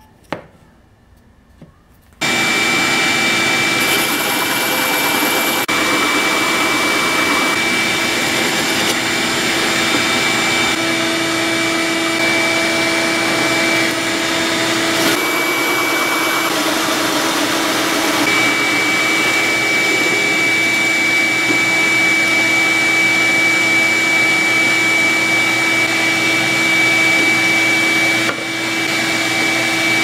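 Drill press running a large hole saw through a pine block, with a shop vacuum on the dust hose running alongside: a loud, steady motor noise that starts about two seconds in, its grind shifting a little as the saw cuts.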